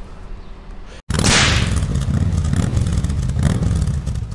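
Quiet outdoor background, then after a brief cut to silence about a second in, an outro sound effect starts: a loud whoosh followed by a steady low rumble.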